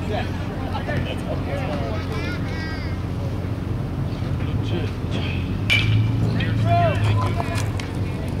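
Crack of a baseball bat hitting a pitched ball, sharp and brief, a little over halfway through. Spectators' voices rise around it over a steady low hum.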